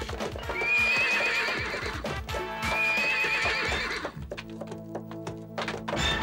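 Horses galloping with rapid hoofbeats, and two long, wavering horse whinnies about two seconds apart, over background music.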